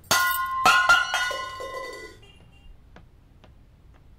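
A stainless-steel tumbler dropped on a terrazzo floor, clanging and bouncing three more times within about a second, with a ringing tone that dies away over about two seconds.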